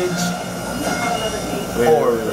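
Steady mechanical hum made of several held tones, with faint voices underneath and a man's voice coming in near the end.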